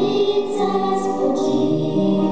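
Three young girls singing together into microphones through a sound system, holding long notes of a Christian song.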